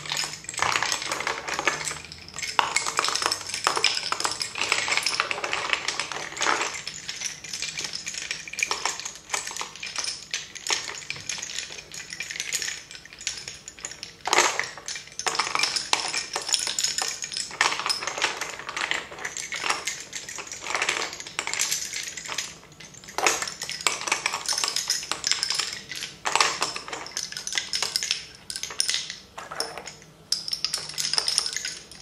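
Wooden lace bobbins clicking and clacking against one another in quick, irregular runs as the pairs are worked across a bobbin-lace pillow, with a few sharper clacks, one about halfway through.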